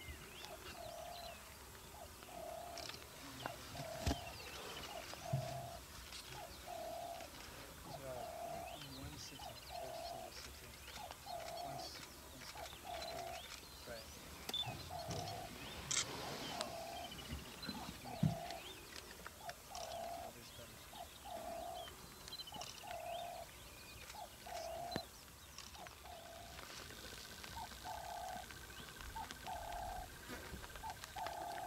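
A lion lapping water, a steady run of short wet laps at about one and a half a second. Small birds chirp now and then in the background.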